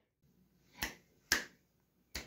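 Two finger snaps about half a second apart.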